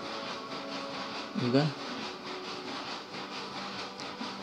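A steady low hiss and faint hum of background noise, broken about a second and a half in by a brief voiced sound from the narrator, a short hum or syllable.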